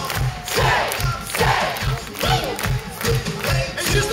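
Live pop-rock band music carried by a steady bass drum beat of about three beats a second, with a crowd cheering and voices shouting over it, loudest in the first half.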